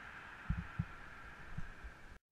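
A few dull, low thumps of footsteps on a concrete stairway, picked up by a body-worn GoPro, over a steady hiss.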